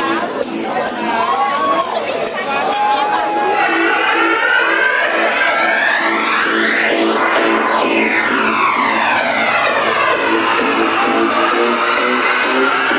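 Electronic dance music from a DJ set, played loud over a club sound system and recorded on a phone, with a steady beat and almost no bass. A crowd shouts and cheers over it in the first few seconds, and a sweeping effect runs through the music in the middle.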